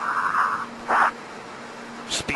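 Breathing inside a pressure-suit helmet, heard over a band-limited radio link: a hissing breath lasting about half a second at the start and a shorter one about a second in, over a faint steady hum.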